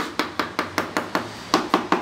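Rubber mallet tapping a ceramic wall tile in quick, evenly spaced strokes, about five a second, with a short pause just past the middle. The tapping beds the tile into the fresh mortar so that it sticks firmly.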